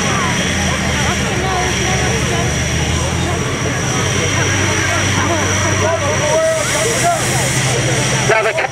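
Fire pump engine running steadily, with many people talking in the background. A hiss swells near the end.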